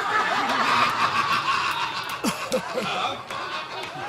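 Theatre audience laughing, many voices at once, loudest in the first two seconds and dying down towards the end.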